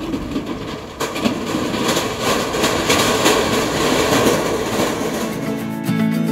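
A vehicle crossing a temporary steel truss bridge, its deck rattling, over the steady rush of the Shyok river. Music comes in just before the end.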